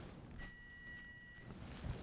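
Electrocautery unit sounding its activation tone, a faint steady high beep lasting about a second, as the tip is applied to the wound to cauterize and stop bleeding.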